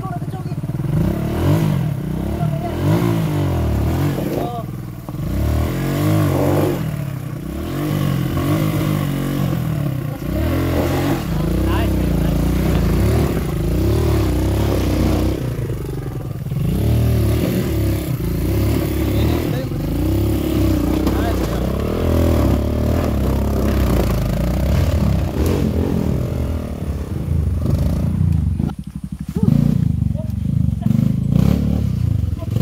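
Dirt bike engines revving up and down over and over as they climb a steep, rutted dirt trail.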